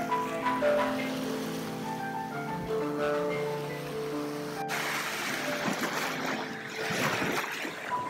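Slow solo piano improvisation with held notes, over the wash of small waves breaking on a sandy beach. A little before halfway the surf sound steps up suddenly and washes louder under the piano.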